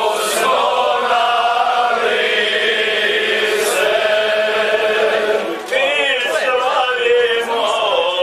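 A man's voice singing a Serbian epic song in the guslar style, long held notes bending in pitch, accompanied by the gusle, a one-string bowed fiddle. About five and a half seconds in the line breaks briefly and resumes with a fast warbling ornament.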